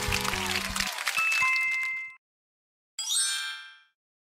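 Background music trails off, then a held electronic ding sounds from about one to two seconds in. Near the end a bright, shimmering chime sound effect rings and fades.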